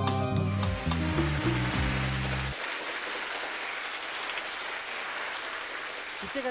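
Studio audience applauding. Backing music with stepped low notes plays under the applause and cuts off about two and a half seconds in.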